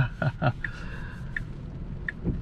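A man's short laugh in the first half second, then a low steady hum in the cabin of a stationary Tesla Model S Plaid.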